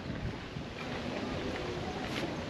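Steady wind noise buffeting the microphone, a low rumbling hiss with no distinct events.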